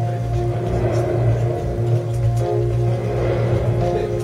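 Background music with sustained low chords, swelling softly about a second in and again near the end.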